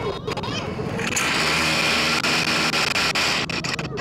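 A small motorbike engine buzzes loudly for about two seconds, starting suddenly about a second in and dropping away near the end, over chatter.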